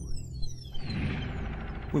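Documentary score and sound design: several high, thin tones glide down together over a low rumble, then a rushing swell of noise builds.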